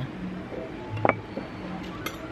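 Soft background music with steady low notes, and about halfway through a single short knock as a ceramic soup-bowl lid is set down on the table.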